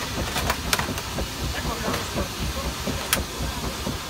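A pause between tunes on a Dutch street organ: a steady rushing hiss with a few sharp clicks and rustles as the folded cardboard music book is changed in the key frame, the loudest click about three seconds in.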